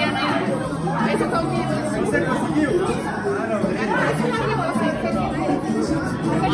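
Several people chatting and talking over one another at a party, with music playing underneath.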